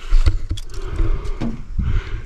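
Wind buffeting the microphone, heard as an uneven low rumble that rises and falls, with a few short knocks and rustles of handling.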